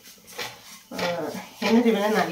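A woman speaking, starting about a second in, after a brief quiet moment with a single light tap.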